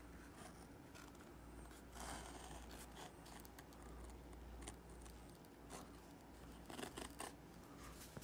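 Faint, intermittent scratching of a scratch awl's point drawn along the edge of a template, scoring a traced line into four to five ounce vegetable-tanned leather.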